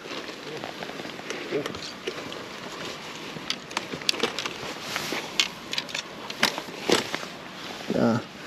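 Irregular crackling clicks and rustles of a landing net being handled on a padded unhooking mat with a pike lying in its mesh.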